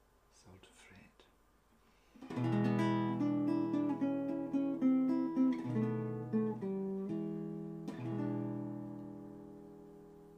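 Acoustic guitar playing the classic blues ending in E, starting about two seconds in. A quick run of picked notes and chord changes leads to a final E7 chord, struck near the end and left to ring out and fade.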